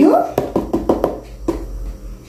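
Sweetcorn shaken out of a small can onto grated carrot: a quick run of about eight light taps and clicks, fading out after a second and a half.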